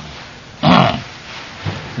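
A man's short, rough vocal grunt, about half a second in, over the steady hiss of an old tape recording.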